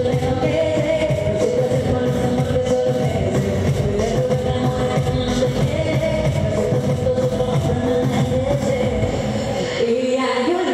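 A woman singing into a handheld microphone over amplified backing music with a steady beat.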